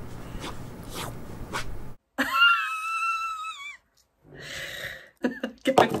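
A woman laughing helplessly, to the point of tears: about two seconds in comes a long, high-pitched squeal, then a wheezy gasp of breath, then rapid bursts of laughter near the end.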